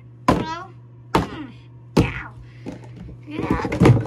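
Objects knocking hard in a bathtub: three sharp thunks about a second apart, the first followed by a short falling cry, then a quick rattle of taps near the end.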